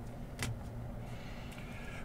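Faint steady low hum with one short click about half a second in, from a trading card in a rigid plastic top loader being handled.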